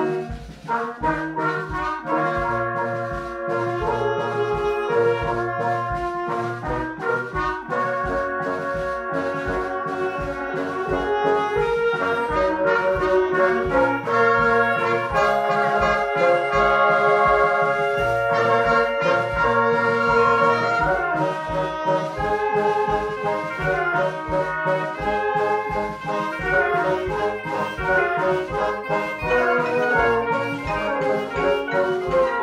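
Concert band playing an arrangement of Western film themes, with brass leading over woodwinds and a steady low beat underneath. The playing thins briefly about half a second in, then runs on.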